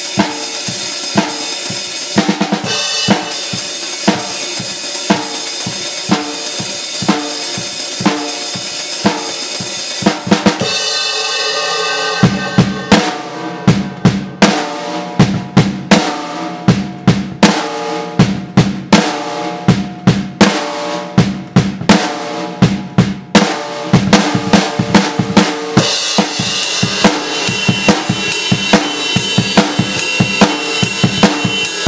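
Acoustic drum kit played solo, with its bass drum faint against the snare and cymbals. For the first ten seconds it plays a steady rock beat under a dense cymbal wash; after a short break it plays a sparser beat of separate drum strokes with little cymbal, and the cymbal wash returns near the end.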